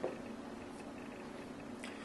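Faint room tone with a steady low hum during a pause between sentences, and a small click near the end.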